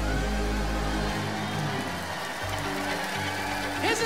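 A live rock band holds sustained chords. A deep bass note rings under them and drops away about a second in, leaving held keyboard and guitar tones.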